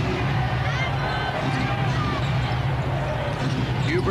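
Basketball arena sound from a TV broadcast: crowd voices and a basketball being dribbled on the court, over a steady low hum.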